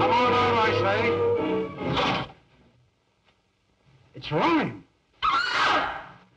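Film score music with held chords, ending about two seconds in. After a short silence come two loud human cries or shouts about a second apart, the second one louder and harsher.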